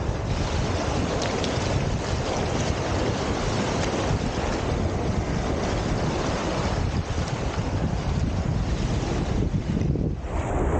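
Small lake waves washing in over rounded cobble stones at the water's edge, with steady wind buffeting the microphone.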